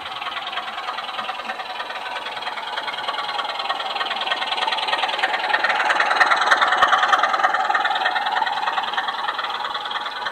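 Model diesel locomotive with a train of mineral wagons running past close by: a fast, continuous clicking rattle of wheels on the track with engine sound, growing louder as it approaches, loudest about six to seven seconds in as it passes, then easing off.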